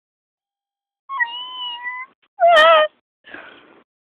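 A domestic cat meows twice: first a steady, held meow, then a louder, lower, wavering one. A short breathy sound follows near the end.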